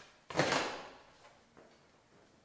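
Interior door being opened: one short rustling sound about a third of a second in that fades within half a second.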